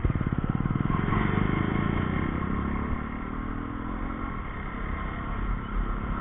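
Single-cylinder KTM Duke motorcycle engine pulling away at low speed: a rapid, even firing beat at first, then the note rises as the bike accelerates, levelling off a little after the middle.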